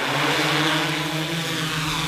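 Large quadcopter camera drone taking off from grass: the steady hum of its four rotors swells in the first half second, then holds a steady pitch as it climbs.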